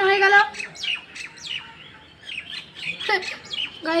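Birds chirping: a rapid run of short, falling chirps, after a longer steady call at the very start.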